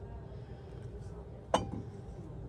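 Low room tone, then a single sharp clink of a heavy glass bowl set down on a shelf about one and a half seconds in, as a woman's voice begins.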